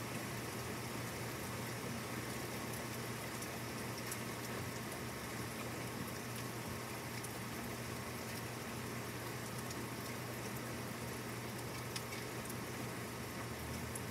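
Steady rain falling, an even hiss with scattered faint drop ticks.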